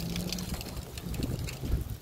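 Footsteps of slide sandals slapping and scuffing on asphalt, a faint click about every half second, under wind buffeting the microphone.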